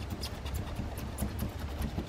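Faint, irregular clicks and crackles of double-sided 3M adhesive tape being pried and cut from under a car's trunk lip spoiler.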